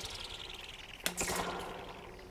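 A stretched metal spring struck, giving a sharp zinging twang that flutters rapidly and falls in pitch as it fades. The previous strike is still dying away at the start, and a fresh strike comes about a second in.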